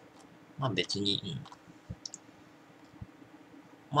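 A short murmur of a man's voice about a second in, then a few faint clicks of a computer mouse while a web page is scrolled, over a faint steady hum.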